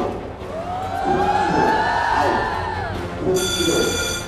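Editing sound effects over background music: a long swooping tone rises and then falls over a couple of seconds, then a bright ringing chime comes in near the end.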